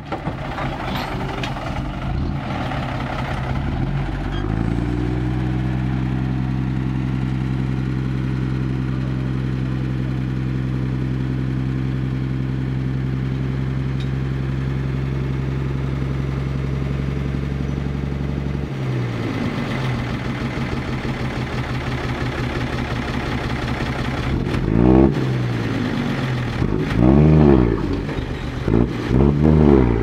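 Six-wheel dump truck's diesel engine revving up and holding a steady raised speed while the hydraulic hoist tips the soil-laden bed, then dropping back to a lower note about two-thirds of the way through. Near the end the engine is revved in several short bursts, rising and falling, as the soil pours out.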